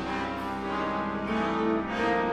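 A symphony orchestra with solo marimba playing a soft passage of held chords, the harmony changing partway through.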